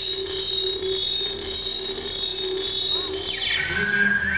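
Electronic dance music: a held low synthesizer tone under a high steady whine, with pitch sweeps falling and then rising near the end.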